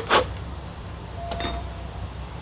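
A short puff of breath right at the start, blowing across the carved clay tea bowl. About a second and a half in comes a light clink with a brief ring.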